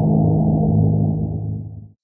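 Low, deep gong-like stinger sound effect for a title card, ringing on a steady pitch and fading out near the end.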